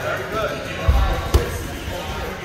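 Two dull thuds from sparring on a gym mat, about half a second apart, the second one sharper. Music and voices carry on underneath.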